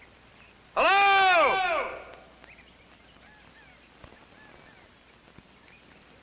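A horse whinnies once, a loud call of about a second that rises and then falls in pitch. Faint bird chirps sound in the background.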